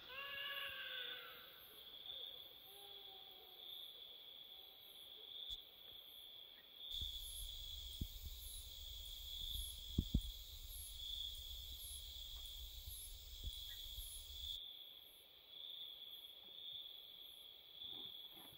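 Faint night insects, crickets, chirping in a steady, evenly pulsing high trill. A brief animal call with sliding pitch is heard at the start, and a couple of soft knocks come about ten seconds in.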